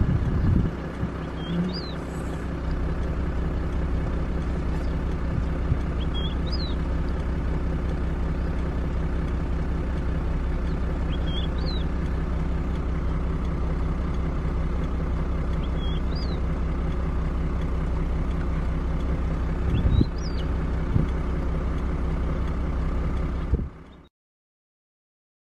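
Vehicle engine idling with a steady low drone. A bird gives a short two-note call that rises at the end, five times at about five-second intervals. The sound cuts off abruptly just before the end.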